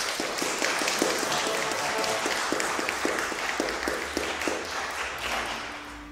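Audience applauding, dying away near the end.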